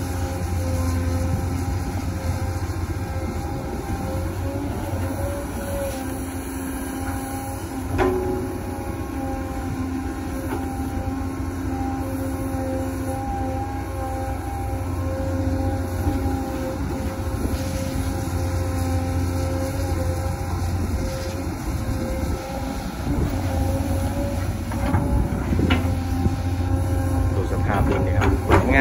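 Diesel engine of a hydraulic excavator running steadily under working load while digging wet soil, with a deep hum and tones that shift a little as it works. There is a single sharp knock about eight seconds in.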